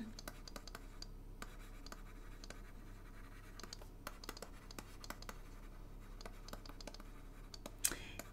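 Stylus writing on a drawing tablet: faint, irregular scratches and small clicks of the pen strokes as words are handwritten, over a faint steady low hum.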